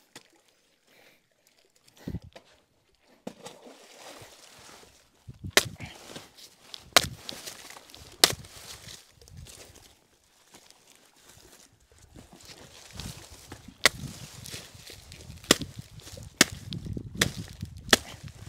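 Machete chopping a banana plant's trunk into short chunks: a series of sharp chops at irregular intervals, with quieter handling noise between them.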